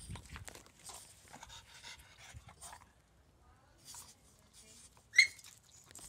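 Two small dogs, a French bulldog and a chihuahua-type dog, scuffling on concrete: faint panting and scuffling, with one short, sharp, high yelp about five seconds in.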